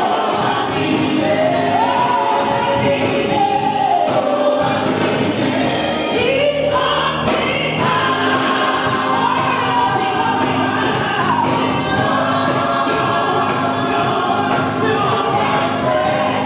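A church congregation singing a gospel praise song together, loud and steady.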